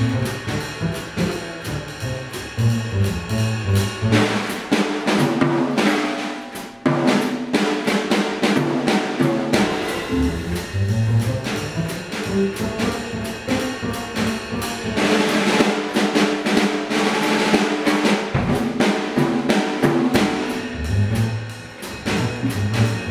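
Jazz drumming on a Gretsch drum kit, with snare, bass drum and cymbals, against a moving line of low pitched notes. The cymbal wash swells about four seconds in and again around fifteen seconds.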